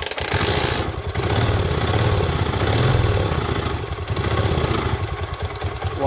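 Honda Eterno scooter's single-cylinder four-stroke engine idling with its rocker cover off. It is run this way to show oil circulating over the exposed valve gear, and the owner judges the circulation and the engine's condition good.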